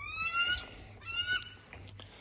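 A bird of prey calling twice: two short, high yelps that rise in pitch, the second about a second after the first.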